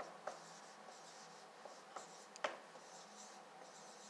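Marker writing on a whiteboard, faint, with a few short strokes and taps of the tip on the board, the loudest about two and a half seconds in.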